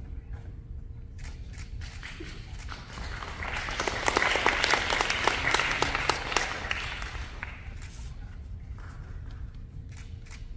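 Audience applauding. The clapping builds about three seconds in, is loudest for a few seconds, then dies away before the end.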